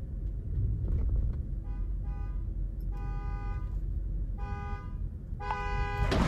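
Car horn honking in five blasts, the first two short and the later ones longer, heard from inside a moving car over the low rumble of the cabin.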